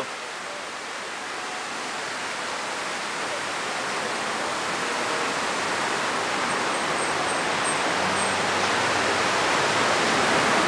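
Steady rushing of water cascading down a fountain wall, growing louder throughout.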